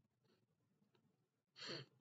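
Near silence, then a man's short breath, like a sigh or in-breath, near the end.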